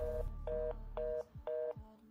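Telephone fast busy (reorder) tone: four short two-note beeps, about two a second, the signal that the line has gone dead or the call can't go through.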